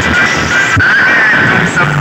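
Electronic dance music played very loud through a stacked P.C. Sound DJ box speaker system. The heavy bass beat drops out and a high, wavering melody carries on over a dense wash of sound.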